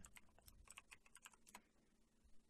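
Faint computer keyboard typing: a quick run of light key clicks that stops about a second and a half in.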